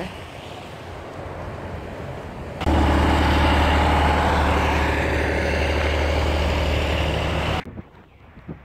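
Heavy truck's engine running loud and close, a steady low drone that starts abruptly about two and a half seconds in and cuts off suddenly near the end. Before it, quieter street traffic noise.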